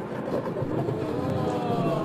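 A sound effect played from a software soundboard: a sustained sound with several tones that slowly glide up and down in pitch.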